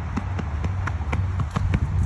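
Quick footsteps on rubber safety-tile flooring, a run of light taps at about five or six a second over a steady low rumble.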